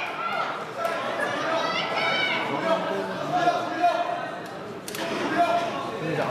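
Spectators talking, their voices overlapping, with a sharp click about five seconds in.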